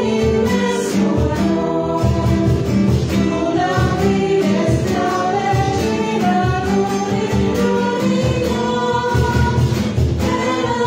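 A choir singing Christian devotional music, with sustained sung notes throughout.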